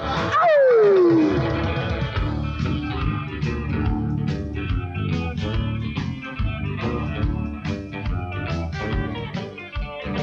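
Instrumental break of a rock-and-roll song played by a band of electric guitar, bass and drums. It opens with a loud note sliding down in pitch, then the band plays on at an even beat.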